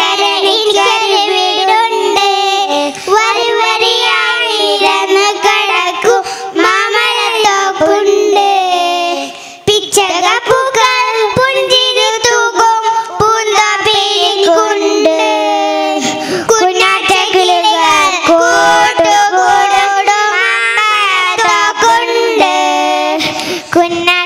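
A small group of young girls singing a song together into handheld microphones, with a brief break in the singing about ten seconds in.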